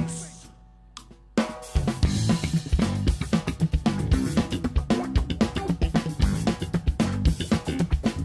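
A band's last note dies away into a short lull with a click or two; about a second and a half in, a drum kit comes in with kick, snare, hi-hat and cymbals, with bass underneath, starting the next groove.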